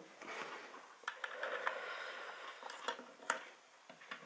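Light handling noise of cables being plugged in and a small device being handled: several short sharp clicks, the clearest a little after three seconds, over faint rustling.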